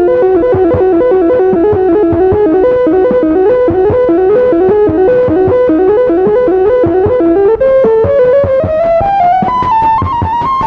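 Casio MT-100 electronic keyboard playing a fast run of notes over a steady drum beat. The melody climbs steadily in pitch near the end.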